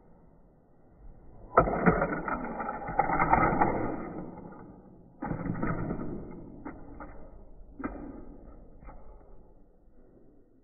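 A die-cast Hot Wheels toy car rattling along a plastic track. A loud rolling clatter starts suddenly about a second and a half in and fades. A second one starts abruptly about halfway through, followed by a few sharp clicks and knocks as the car strikes the ramps and lands.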